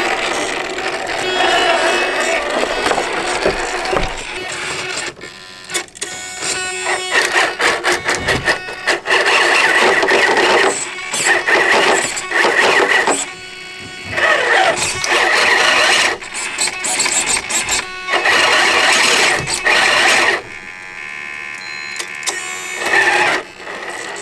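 RC rock crawler's brushless motor and geared drivetrain whining in stretches of a few seconds as the truck is throttled over rocks, with short pauses between pushes.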